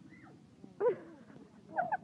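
Short, loud, high-pitched human cries: one about a second in and a quick pair near the end, as someone falls from a rope swing onto the sand.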